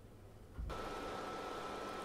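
Near silence, then about two-thirds of a second in a steady, faint hiss with a thin high whine comes in and holds: the background noise of the narration recording.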